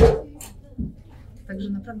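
A sharp knock right at the start as a louder noise cuts off, then a softer low thump a little under a second in, followed by a woman starting to speak.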